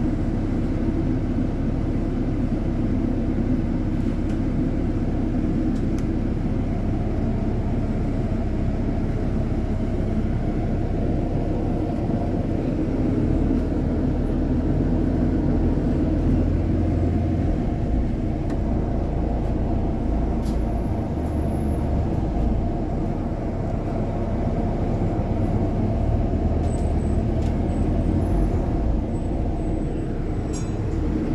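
Steady low rumble of engine and road noise heard from inside a moving London double-decker bus. The low drone swells for several seconds midway as the bus pulls along, then settles back.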